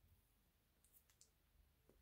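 Near silence: room tone, with a few faint clicks a little under a second in.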